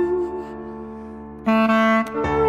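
Clarinet playing Armenian folk melody: a held note that fades out in the first half second, leaving quieter sustained accompaniment tones, then a loud low clarinet note coming in sharply about a second and a half in.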